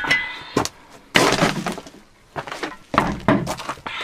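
Clinking and crunching of loose debris in a stone cellar. There are several sharp knocks, with a longer crunch about a second in and another near the end.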